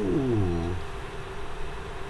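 A man's voice drawn out in one long syllable, falling steadily in pitch over the first second, then a faint room hum.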